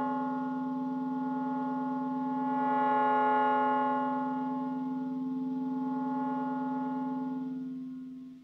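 Clarinet and live electronics: a sustained chord of several held tones ringing steadily, swelling slightly about three seconds in and fading away at the end.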